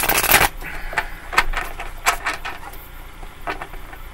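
A tarot deck being riffle-shuffled and bridged: a rapid flutter of cards in the first half-second, then scattered snaps and taps as the cards are shuffled by hand.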